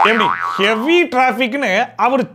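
A person's voice with strongly sliding, sing-song pitch, in short phrases.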